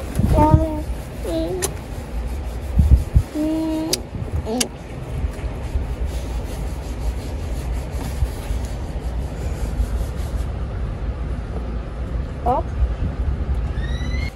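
Steady low rumble heard inside the cabin of a Lada Niva, with a few brief knocks. A small child gives short vocal sounds now and then over it.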